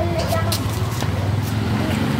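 A motor vehicle's engine running close by on a street, a steady low rumble, with brief voices in the first half-second.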